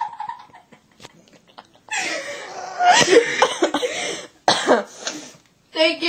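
A person coughing in harsh, rough bursts: a long fit starting about two seconds in, a shorter one just before the end, and another at the very end.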